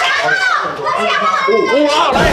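Several excited voices talking and calling out over one another at once.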